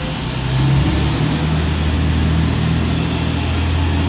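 A city bus's diesel engine running with a steady low hum, getting louder about a second in as it pulls away.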